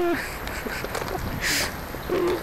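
A young man's voice drawing out the end of a word at the very start, then a low outdoor background with a short breathy hiss about one and a half seconds in.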